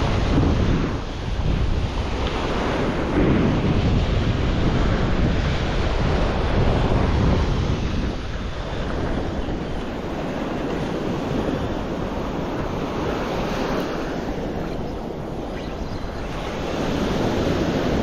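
Ocean surf washing onto a sandy beach in rough water, swelling and easing every few seconds, with wind buffeting the microphone.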